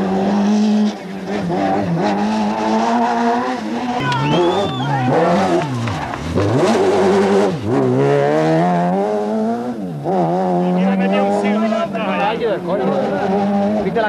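Rally car engine revved hard as the car approaches and passes close by. The pitch climbs and drops several times through gear changes and braking, with a deep drop about six seconds in.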